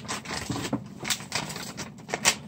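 Paper and packing material rustling and crinkling as they are handled, with a few short sharp crackles in the second half.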